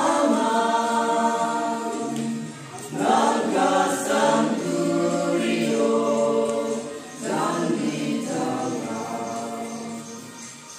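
A group of voices singing a slow song together, in phrases of about four seconds with long held notes; a new phrase begins about three seconds in and again about seven seconds in.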